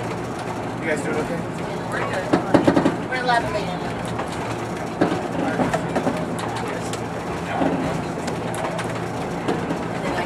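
Interior of a moving Budd RDC railcar: the steady hum of its onboard diesel engines and the rumble of its wheels on the track, with a cluster of sharp knocks about two and a half seconds in as the wheels pass over rail joints.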